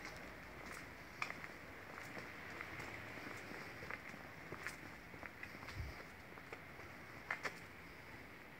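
Footsteps on paving: a few irregular light clicks over a steady faint hiss of open-air background.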